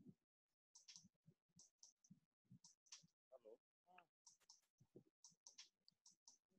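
Near silence, broken by very faint, chopped fragments of a voice and small clicks coming through a video-call connection.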